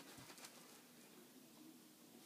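Near silence: room tone, with a faint soft bump just after the start.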